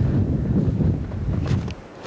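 Blizzard wind buffeting the camcorder microphone: a loud, low, rumbling rush that drops away sharply near the end.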